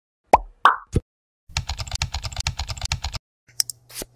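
Intro sound effects: three quick pops, followed by a rapid run of computer-keyboard typing clicks and then a few mouse clicks near the end.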